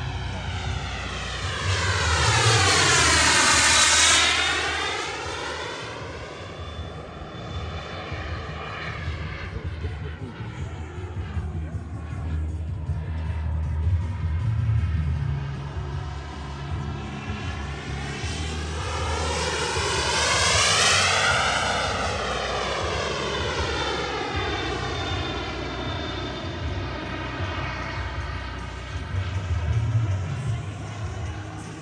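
Twin-turbine RC scale jet flying past twice, its turbine rush swelling loudest about three seconds in and again about two-thirds through, the sound sweeping in pitch as the jet passes overhead.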